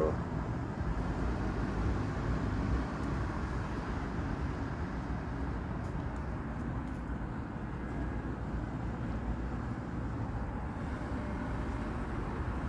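Steady low rumble of vehicle engines and road traffic.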